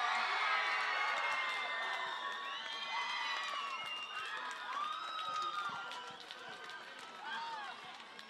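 A crowd of young people cheering and shouting, many high-pitched voices at once, loudest at first and fading away over the seconds.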